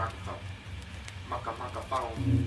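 Faint voices of a studio recording session talking in a lull before the beat, over a low steady bass tone that fades away about halfway through.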